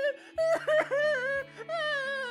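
A high wordless voice sings long, sliding notes over a low held chord.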